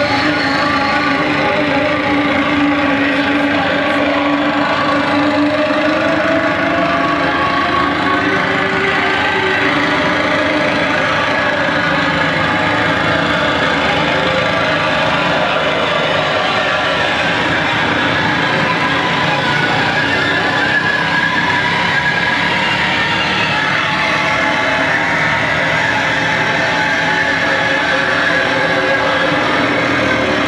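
Live harsh noise music from electronics and effects pedals: a loud, unbroken wall of distorted noise with tones that waver and drift slowly in pitch.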